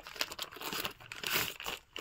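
Plastic packaging and cloth crinkling and rustling in several irregular bursts as folded cotton kurtis are handled and unfolded.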